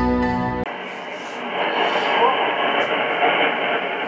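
Theme music that cuts off abruptly about two-thirds of a second in, followed by the audio of a JRC NRD-545 shortwave receiver: a weak broadcast signal buried in hiss, sounding narrow and muffled through the receiver's speaker.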